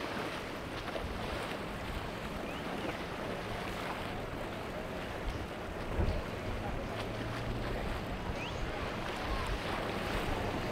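A boat with four Mercury 450 outboard engines running as it passes, a steady low hum under water rushing along the hull. Wind buffets the microphone, loudest about six seconds in.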